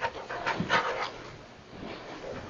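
Rustling and breathy handling noise close to a lectern microphone, a few short irregular bursts in the first second, then fading to low hiss.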